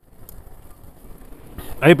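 Faint steady sizzling of a beef chuck roast searing over hot embers on a barbecue grill. A man's voice starts near the end.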